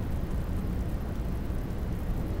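Steady low hum and hiss of background noise, with no distinct events.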